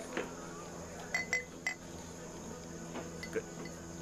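Three light clinks of glass on glass about a second in, each with a short ringing tone, as beer glasses and a beer bottle are handled for a pour.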